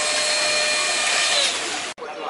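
Slot cars' small electric motors whining at speed, with the rattle and hiss of the cars running in their slots on the track. The whine falls away about a second and a half in, and the whole sound cuts off suddenly just before the end.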